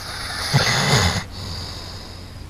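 A sleeping dog snoring: one snore about half a second in, lasting under a second, over a steady low hum and hiss.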